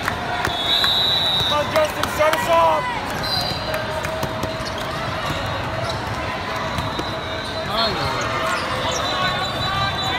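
Indoor volleyball hall din: volleyballs being hit and bouncing on the courts, sneakers squeaking on the court surface in short bursts of squeaks, and short high whistle blasts, about a second in and again near three and a half seconds, over a steady babble of voices from the crowd and players.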